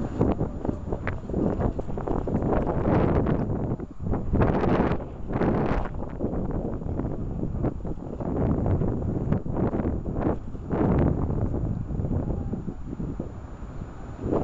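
Wind buffeting the microphone: a low noise that comes in gusts, swelling and fading every second or two, with a few stronger gusts around the middle.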